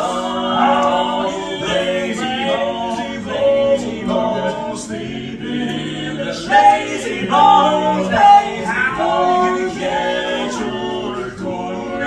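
Barbershop quartet of four male voices singing a cappella in close four-part harmony, the chords held and changing every second or so.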